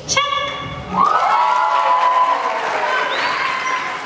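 A performer's voice finishes a phrase. About a second in, an audience breaks into applause, with a long held cheer rising over the clapping.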